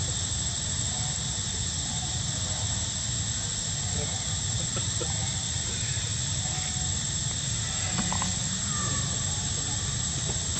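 Steady outdoor background: a constant high-pitched insect drone over a low rumble, with faint murmuring human voices.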